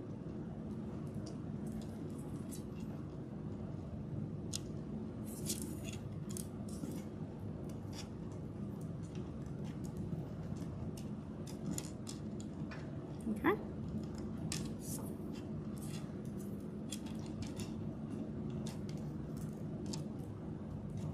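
Small plastic pony beads clicking against each other, scattered light ticks, as cord is threaded through them and the beadwork is handled, over a steady low hum. A short rising squeak about two-thirds of the way in.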